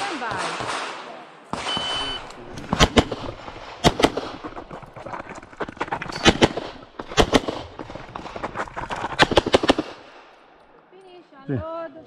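A range officer's shot timer gives a short, steady electronic start beep about a second and a half in, then a handgun fires rapid shots in quick pairs and triples, in bursts spread over about seven seconds, as a competitor shoots an IPSC stage.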